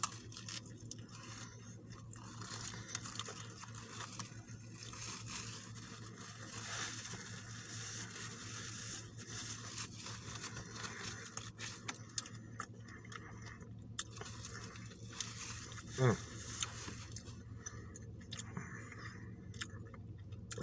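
Faint chewing of a grilled chicken sandwich on a toasted bun with lettuce: soft crunches and small mouth clicks over a low steady hum, with a short "mm" about 16 seconds in.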